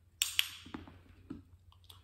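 Shoe steps and a small dog's claws on a hard, glossy floor: a sharp scuff about a fifth of a second in, followed by a few light clicks.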